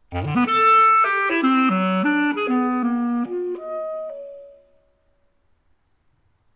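Solo basset horn playing a quick run up from its low register, then a string of short separate notes about three or four a second, ending on a held note that fades out about four and a half seconds in.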